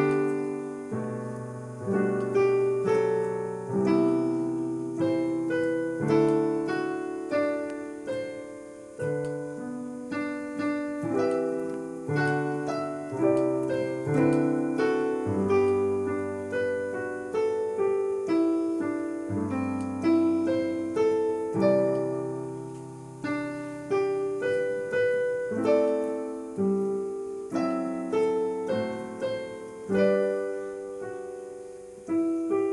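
Digital piano playing a slow piece in chords over a bass line, each chord struck and left to die away.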